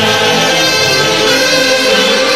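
Orquesta típica of the Peruvian central highlands playing a tunantada. A massed saxophone section and clarinets sound long held notes together.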